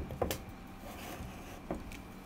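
A few light clicks and knocks from hands handling and turning the tension head of a portable electric stringing machine: two close together at the start and one near the end.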